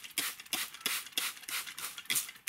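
Hand trigger spray bottle squeezed rapidly over and over on a fine-mist setting, each squeeze a short hiss, several a second, misting the soil of a freshly sown seed tray.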